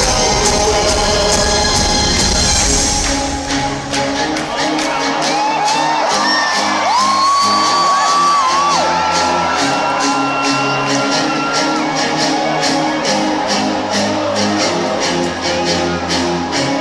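Live band music over an arena sound system: after about three seconds the bass drops away, leaving held chords over a steady light beat, with whoops and cheers from the crowd.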